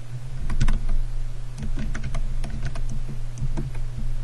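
Typing on a computer keyboard: a quick, irregular run of key clicks as a command is typed, over a steady low hum.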